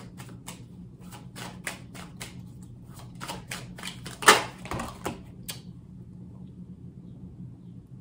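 A tarot deck being shuffled by hand: an irregular run of card clicks and snaps, one louder just past four seconds in, which stops about five and a half seconds in.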